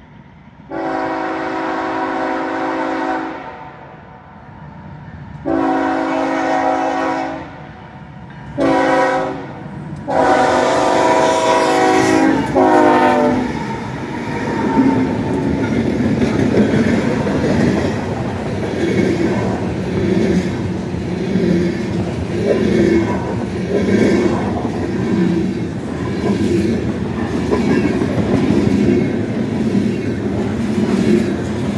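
Iowa Interstate ES44AC locomotive's Nathan K5HL five-chime air horn sounding the grade-crossing signal: long, long, short, long, the last blast dropping in pitch as the engine passes. Then the diesel locomotives and covered hopper cars roll by with a steady rumble and wheels clicking over the rail joints.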